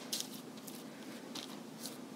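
A pastry brush dabbing and stroking melted ghee onto raw pie dough: a few soft, faint swishes.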